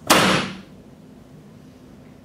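A person's single loud sneeze: a sharp, noisy burst just after the start that dies away within about half a second.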